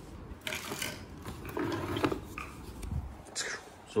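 Handling noise: a few short rustles and a low thud, with pauses between them.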